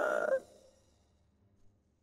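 A woman crying aloud, her wavering sob breaking off about half a second in, followed by near silence.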